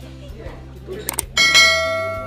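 Two quick clicks, then a bright bell-like ding about one and a half seconds in that dies away over about a second: the click-and-bell sound effect of an animated YouTube subscribe button.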